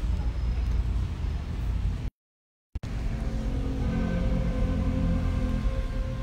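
A steady low rumble of background noise, which cuts out completely for about half a second a couple of seconds in. Faint held tones come up in the second half.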